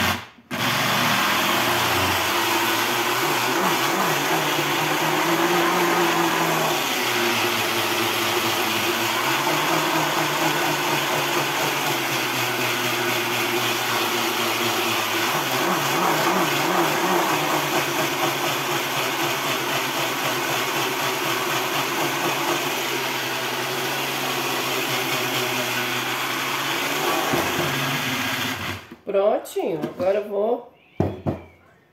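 Small household blender grinding coarse salt with citric acid into fine lemon salt: a loud, steady motor whir whose pitch shifts a few times as the load changes. It cuts out briefly just after the start, runs again, and stops about a second before the end, followed by a few clatters of handling.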